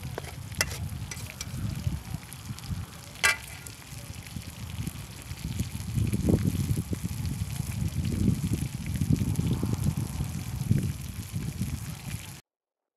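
Wind buffeting the microphone: an uneven low rumble that grows stronger about six seconds in, with a sharp click about three seconds in.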